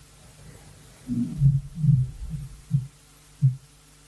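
A man's low, muffled closed-mouth hums close to the microphone: a string of about six short 'mm' sounds from about a second in until shortly before the end.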